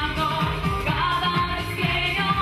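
Live salsa band playing, with singing over a moving bass line.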